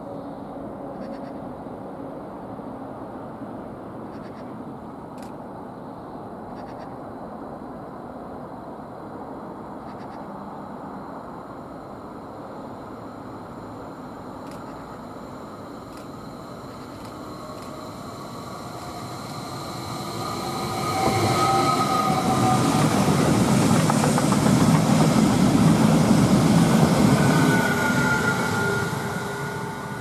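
Stadler FLIRT electric regional train running in, faint at first, then loud from about twenty seconds in as it passes close. Its wheels rumble on the rails under a high, steady whine, and the sound fades away near the end.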